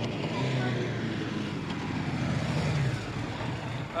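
A Yamaha sport motorcycle's engine running as the bike rides up and comes to a stop. It sounds steady, with a slight rise in pitch and loudness before it eases off near the end.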